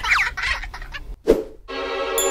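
Comic cartoon-style sound effects: quick squeaky falling glides, then a short sweep a little over a second in. Background music comes in near the end.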